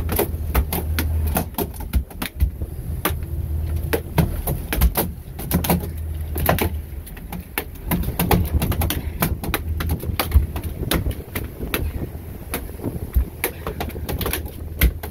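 Irregular knocks and thuds on a fiberglass boat deck as a freshly landed marlin is held down and struggles, over the steady low hum of the boat's engine.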